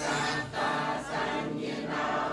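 A congregation chanting Buddhist verses together in unison, a steady blend of many voices.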